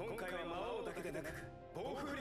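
Anime dialogue: a character speaking over background music.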